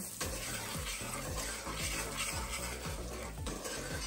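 A wooden spoon stirring butter and brown sugar melting over low heat in an aluminium pot, with background music playing.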